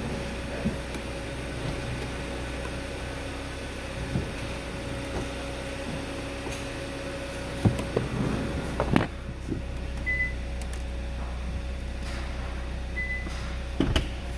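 2014 Hyundai Santa Fe's 2.4-litre four-cylinder engine idling with a steady hum. A few sharp knocks come about eight to nine seconds in, and two short high beeps sound near ten and thirteen seconds.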